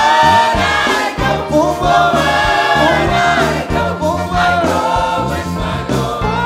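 Gospel choir singing a worship song together, backed by a live band with steady bass notes and a regular beat.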